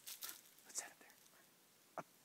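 Faint whispering: a few soft, breathy syllables in the first second, then a short sharp click right at the end.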